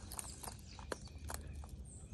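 Faint outdoor background: a low steady hum with a few light, scattered clicks.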